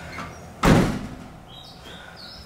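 A car's rear passenger door slammed shut from outside, one solid thud about half a second in, heard from inside the cabin.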